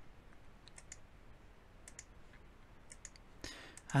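Computer mouse buttons clicking: a few faint clicks in small clusters, roughly one cluster a second.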